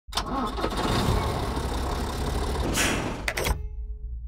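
A motor vehicle engine starting and running, with a brief surge near the end and a couple of sharp clicks before it cuts off suddenly.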